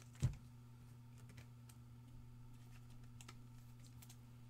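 Trading cards being handled and set down on a table: one thump about a quarter second in, then faint light clicks, over a steady low electrical hum.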